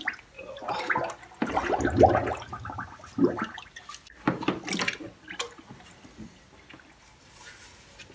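Dirty degreaser solution sloshing, gurgling and dripping as a soaked intake manifold is lifted in a plastic tub and set back down in it. The splashing is irregular and dies down after about five seconds.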